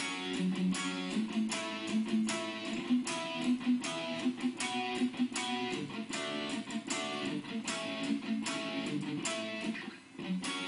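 A guitar playing a verse riff of two-string chord shapes, picked in a steady, even rhythm.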